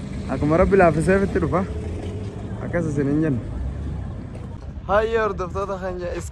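A man's voice in short phrases over a steady low rumble of vehicle traffic.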